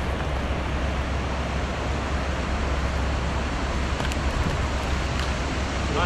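Steady rush of a shallow river flowing over stones, with a low wind rumble on the microphone. A few faint clicks come through about four and five seconds in.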